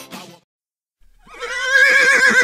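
A horse whinnying, starting about a second in after a short silence and growing louder, its pitch wavering up and down.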